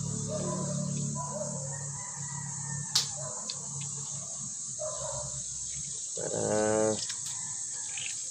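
Steady high-pitched insect chirring in the background. About three seconds in comes a single sharp click, and a little after six seconds a short pitched voice sound.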